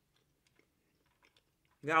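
Near silence with a few faint mouth clicks from chewing soft food close to the microphone, then a woman's voice begins near the end.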